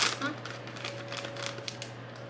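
Light crackling and small clicks of a clear plastic bag being handled while a mask filter is taken out, with one sharper click at the start.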